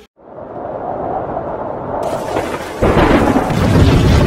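Sound effect of a deep rumble that swells up out of a sudden silence and grows louder. A heavier low rumble cuts in almost three seconds in.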